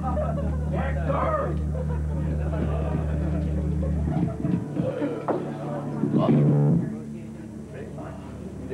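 Amplified rock band's electric guitar and bass holding a sustained low chord that cuts off about four seconds in, followed by shouting voices.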